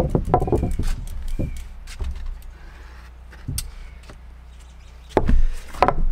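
Handling noise of a camera being set up and a person settling in front of it: scattered clicks, knocks and rustling, with a louder cluster of knocks about five seconds in.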